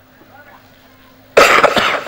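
A man's single loud, sudden cough into a stage microphone about one and a half seconds in, after a quiet pause, fading out quickly.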